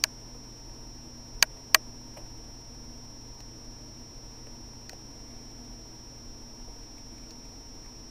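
Quiet room tone with a faint steady high whine, and two sharp clicks in quick succession about a second and a half in, from hands handling a smartphone as it boots.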